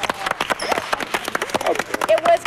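A small group clapping in a quick, uneven patter, with voices over it.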